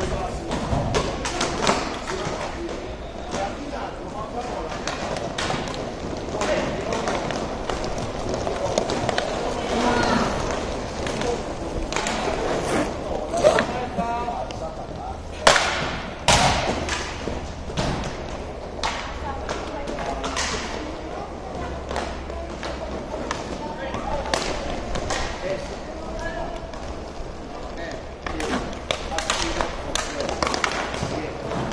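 Inline hockey play: sticks and puck clacking and knocking against the court and boards in scattered sharp hits, the loudest a little before halfway and again just past halfway, over a constant murmur of players' and spectators' voices.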